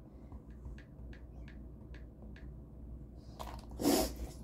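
Faint light taps on a tablet in a foam kid's case, about three a second, then a louder brief brushing knock near the end as a hand comes up to the tablet.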